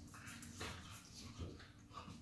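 An Italian greyhound and an Australian shepherd play-fighting: scuffling on the mat with a few short dog vocal sounds, the clearest about half a second in and again near the middle.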